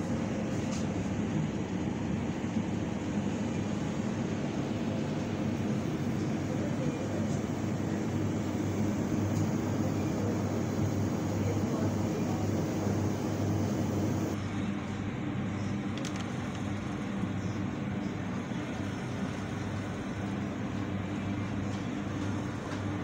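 Steady hum and background noise of a grocery store aisle lined with refrigerated display cases, easing slightly in level about two-thirds of the way through.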